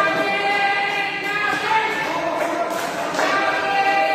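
Music with group singing: several voices holding long notes that change pitch every second or so.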